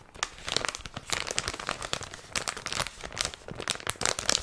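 Plastic candy packets crinkling and crackling as they are squeezed and handled close to the microphone, in a dense run of irregular sharp crackles.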